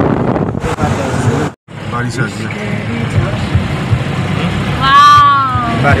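Road noise and engine rumble heard from inside a moving car, with wind buffeting the microphone before a brief dropout. Near the end a loud pitched sound rises and then falls in pitch over about a second, the loudest thing in the clip.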